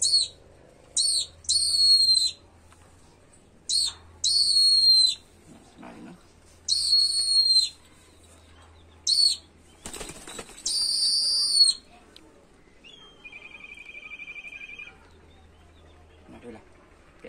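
Young peregrine falcon on the fist giving a series of about eight high-pitched calls, some short and some drawn out, with a burst of wing flapping about ten seconds in.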